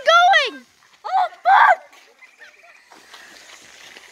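High-pitched wordless exclamations from a person watching a fountain firework: one at the very start and a second about a second in. After that only a faint, quiet hiss remains.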